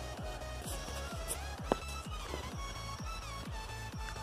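Background electronic music with a steady, fast drum beat.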